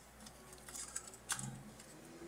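A refrigerator's power plug being pushed into a wall socket: faint handling clicks, then one sharp click about 1.3 s in. The compressor does not start yet, held off by the frost-free refrigerator's start delay.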